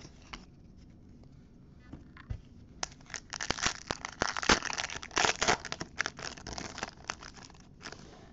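Foil trading-card pack wrapper being torn open and crinkled by hand: a dense run of crackling rustles from about three seconds in until just before the end, after a few soft clicks of cards being handled.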